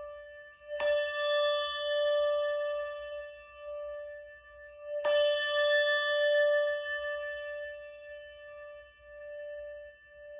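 A bell struck twice, about a second in and again about four seconds later, each strike ringing on with a wavering tone that slowly fades.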